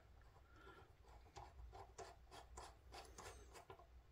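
Near silence with a dozen or so faint, irregular small ticks and scrapes of a folding knife's metal parts and a small screwdriver being handled on a cutting mat.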